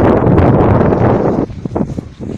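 Wind buffeting a phone's microphone: a loud gust for about a second and a half, then weaker, broken gusts.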